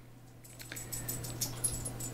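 A dog stirring and shifting about, with faint high clinks and rustles from its movement, over a steady low hum.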